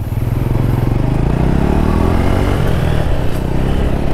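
Motorcycle engine running under way, its note rising as it accelerates about halfway through, with wind and road noise.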